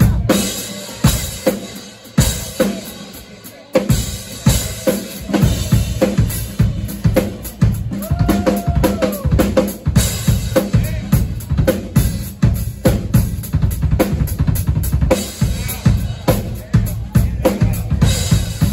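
Live instrumental band with a drum kit driving the beat, electric guitar and bass underneath. After a hit right at the start the sound thins out for a few seconds, then the full drum beat comes back in about four seconds in and keeps a steady rhythm.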